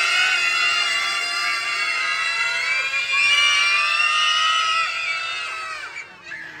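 A group of children shrieking and cheering together in long, high-pitched overlapping cries, fading out near the end.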